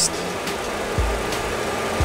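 Steady whirring cockpit noise of a Boeing 737 Classic full flight simulator while its simulated APU is starting up, with a short low thump about halfway through.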